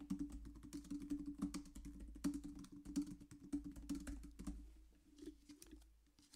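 Typing on a computer keyboard: a quick run of keystrokes that thins out to a few scattered taps after about four and a half seconds.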